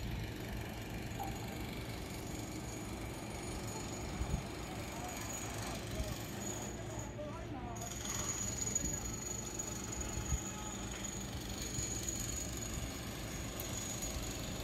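Outdoor ambience: a steady low rumble with faint distant voices. A thin, steady high-pitched tone comes in about halfway through.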